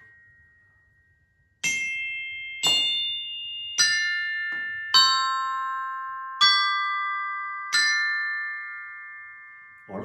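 Professional glockenspiel's metal bars struck with three hard mallets at once: six three-note chords about a second apart, starting about a second and a half in, each one ringing on and fading.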